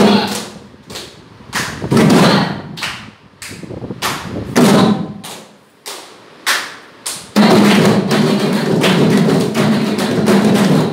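A tuned drum struck by hand, each stroke ringing briefly at a clear pitch: single and paired strokes with pauses between them, then from about seven seconds in a fast, unbroken run of strokes.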